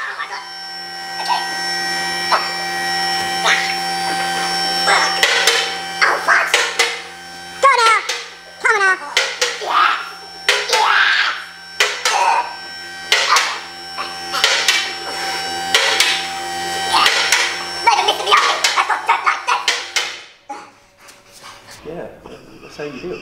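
Electric motor of a two-post car lift running with a steady hum as it raises the car, cutting off near the end. Over it come a man's wordless straining grunts and vocal noises.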